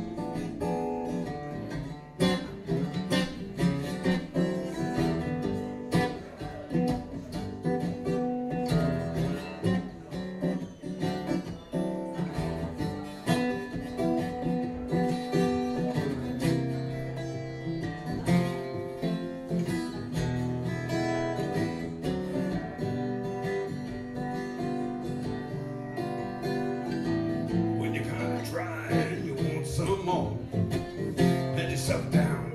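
Steel-string acoustic guitar played solo, strummed in a steady rhythm with chord changes, no singing for most of it.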